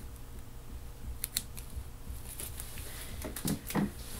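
Scattered small clicks and rustles of gloved hands cutting and prying open a Black Congo habanero pod, with two sharp clicks about a second in and more toward the end.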